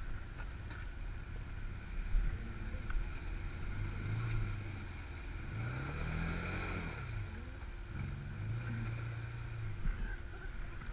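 Off-road side-by-side engine revving up and falling back several times at low speed on a rough trail, with water splashing around the middle as a side-by-side fords a rocky creek.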